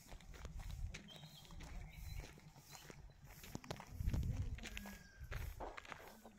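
Footsteps of someone walking on dirt ground, irregular scuffs and steps over a low rumbling noise, loudest about four seconds in.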